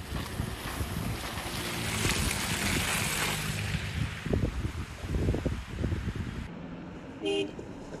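Street ambience in heavy snowfall: wind on the microphone over passing traffic. About six and a half seconds in it gives way to a quieter, steadier road background, with a brief pitched sound shortly after.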